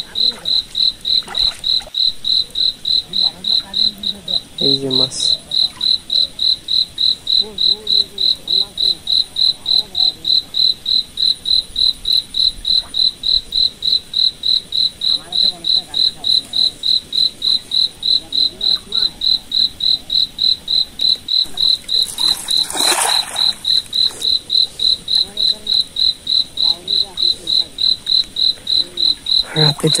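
A cricket chirping without pause, an even high-pitched pulse about two and a half times a second. A brief rush of noise about two-thirds of the way through.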